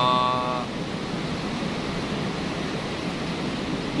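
Steady rushing noise of strong wind and sea surf, even and unbroken.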